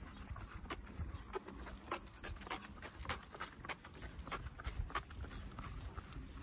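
Footsteps tapping on an asphalt path: sharp, irregular taps, about two to three a second.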